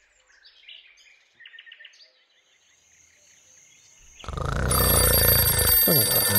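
Faint cartoon birdsong, a few short chirps, then about four seconds in a mechanical twin-bell alarm clock goes off, ringing loudly with a metallic rattle.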